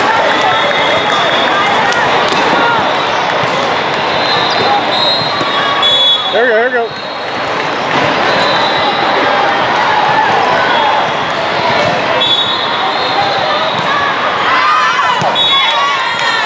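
Busy multi-court volleyball hall: a steady din of many voices and balls being hit and bouncing across the courts, cut by several short, high referee whistle blasts.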